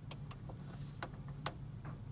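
A handful of small, sharp clicks and ticks of metal and plastic as the presser-foot mechanism of an Elna 320 sewing machine is handled while a new presser foot is fitted, over a low steady hum.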